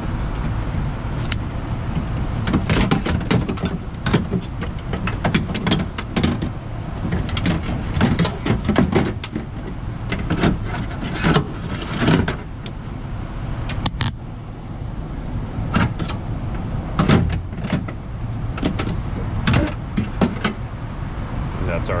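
2005 Mazda MPV power window regulator and motor knocking and rattling against the door's sheet metal as it is worked out through the inner door panel: irregular clanks and clicks over a steady low background hum.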